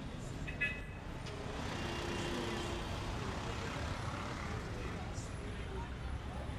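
Outdoor street ambience: a steady low rumble of traffic under the indistinct voices of people around, with one brief sharp high-pitched sound just over half a second in.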